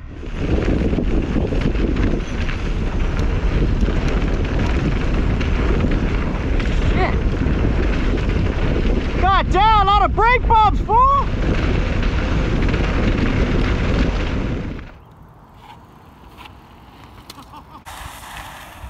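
Wind buffeting an action camera's microphone, with the tyre rumble of a mountain bike ridden fast along a trail. A voice whoops briefly about ten seconds in. The noise cuts off about fifteen seconds in, leaving a much quieter background.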